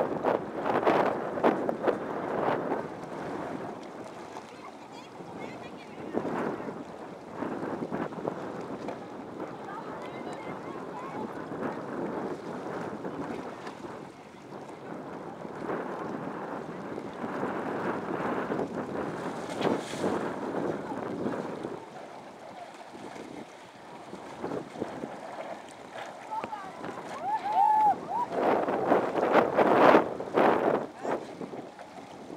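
Gusty wind buffeting the microphone, with small waves lapping and indistinct voices; the gusts are loudest at the start and again near the end.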